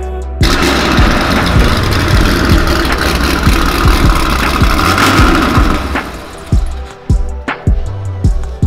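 A Chevrolet Corvette C6 Z06's 7.0-litre V8 starting up and running loudly through its quad exhaust, cutting in suddenly about half a second in and dropping away about six seconds in. Music with a steady beat plays over it.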